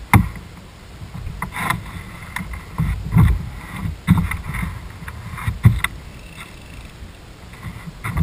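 Irregular knocks and thumps on the deck of a small fishing boat as a fly angler shifts his feet and casts, over a steady low rumble.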